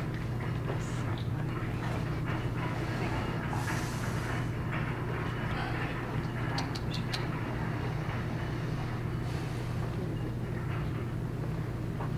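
Steady low hum of room noise, with a few light clicks and brief rustles over it.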